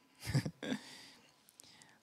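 A man's voice through a handheld microphone: two short, breathy vocal sounds in the first second, then fading away.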